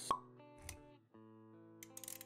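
Intro-animation music of held notes with sound effects: a sharp pop just after the start, the loudest moment, then a softer thump a little later. The music drops out briefly about a second in and comes back.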